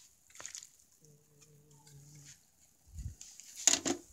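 A short burst of clattering knocks near the end, the loudest sound, like things being handled or bumped. Earlier, a steady low drawn-out tone lasts about a second.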